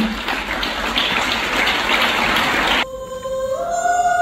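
An audience applauding, cut off suddenly about three seconds in, followed by a choir starting to sing held notes.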